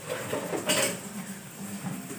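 Metal pans and utensils clattering and scraping while cooking, with one louder clatter a little under a second in.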